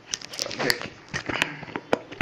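Kitchen handling noises: a scattered series of sharp clicks and knocks, the loudest one near the end, with faint voice-like sounds underneath.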